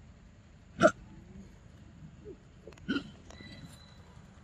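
Two short, sharp monkey calls: a loud one about a second in and a quieter one near three seconds.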